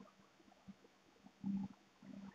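Whiteboard duster rubbing across a whiteboard in short, irregular wiping strokes, faint, with one louder rub about a second and a half in.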